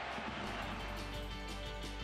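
Faint match-crowd noise, then background music with steady held notes fading in about half a second in.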